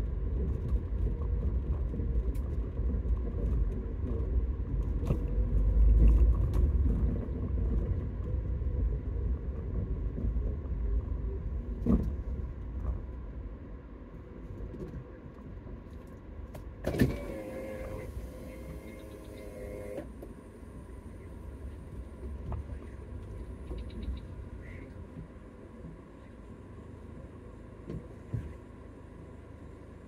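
Low road and engine rumble of a car driving slowly, heard inside its cabin. The rumble eases off in the second half. A brief knock comes a little before the middle, and soon after a sharp onset is followed by a pitched sound lasting about three seconds that cuts off suddenly.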